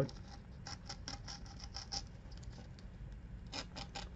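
Utility knife blade cutting along a strip of cloth-backed sandpaper on a cutting mat: faint, quick scratchy ticks, several a second, with a few louder ones near the end.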